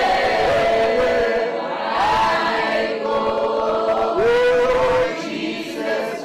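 A congregation singing a worship song together, many voices holding long notes.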